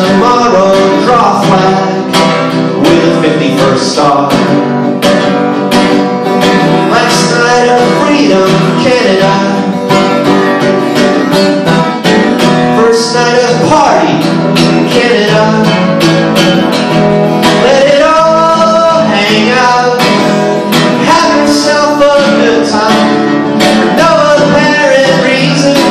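Acoustic guitar strummed steadily, with a man singing over it at times: a live solo acoustic song.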